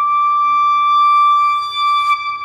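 B-flat clarinet holding one long, steady high note, ending near the end with a breathy rush of air.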